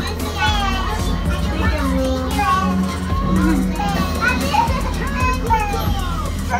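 Several young girls talking and calling out over one another in high voices, with music playing underneath.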